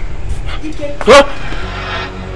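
A dog barks once, loudly, about a second in, over a low background music score.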